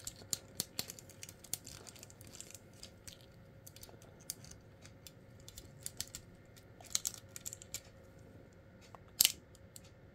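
Small plastic clicks and taps of a transforming robot toy's parts and ratchet joints being turned and repositioned by hand, coming irregularly, with a sharper click about nine seconds in.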